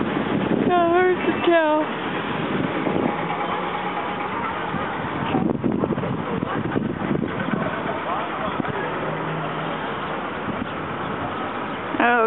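Outdoor street sound of a crowd: many voices talking at once over traffic noise, with two short wavering pitched calls about a second in.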